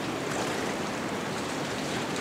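Steady rushing of river water, an even hiss with no distinct events.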